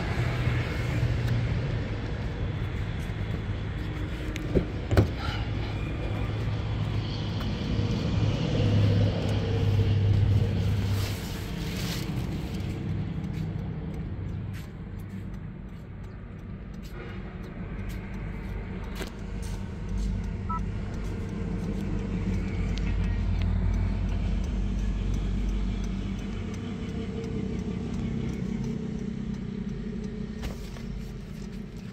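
A motor vehicle engine running with a steady low rumble that swells in the second half, and one sharp knock about five seconds in.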